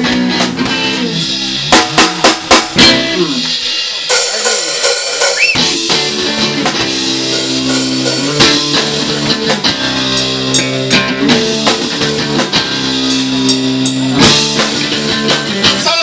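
Live rock band playing an instrumental passage on electric guitar, electric bass and drum kit. A run of sharp band hits comes about two seconds in, the low end drops out briefly around four to five seconds, and the full band comes back in about five and a half seconds in.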